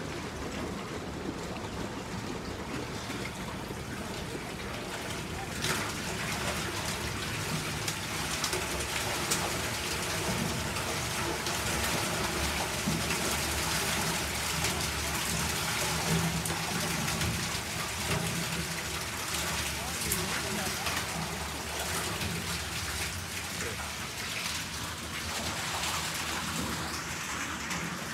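Water splashing and draining in a hatchery truck's stainless steel fish tank as a load of rainbow trout is flushed out through the release pipe, the fish thrashing in the falling water. It is an even wash of splashing, a little louder in the middle.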